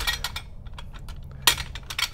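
Hard objects clinking and knocking as gear is handled and moved about, with a small cluster of clicks at the start and one sharper knock about one and a half seconds in.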